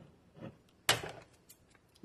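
Plastic salad-kit packaging being handled, with one sharp snap about a second in and a few faint ticks, as the dressing packet is taken out.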